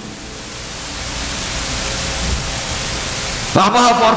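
A loud, steady hiss of noise spread across all pitches, like static on the recording, swelling slightly over the first couple of seconds. A man's voice comes back in near the end.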